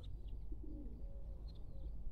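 Faint cooing of a dove: a few soft, low notes.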